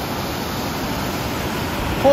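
Steady rushing of a shallow, rocky river running over rapids.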